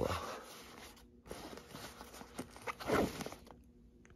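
Fabric backpack rustling and scraping as a hand stuffs a small jar into its zippered front pocket, with zipper sounds.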